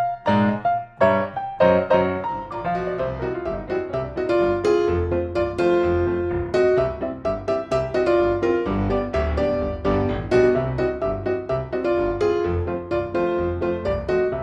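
Background music played on piano: a steady run of plucky keyboard notes with a bass line.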